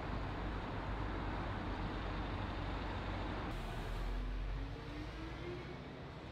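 Street traffic: a steady low rumble of road vehicles, with one engine rising in pitch near the end as a vehicle speeds up.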